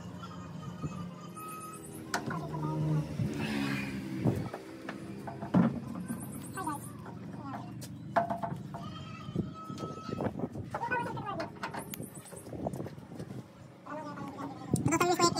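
Indistinct background talk over faint music.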